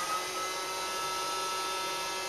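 Roomba robot vacuum running, its vacuum fan motor spinning up with a rising whine that settles into a steady high pitch just after the start, over the steady hum of its turning brushes.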